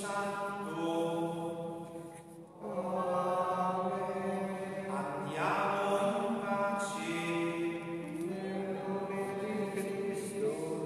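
Liturgical chant sung in a reverberant church, a melody of long held notes with a brief break between phrases about two and a half seconds in.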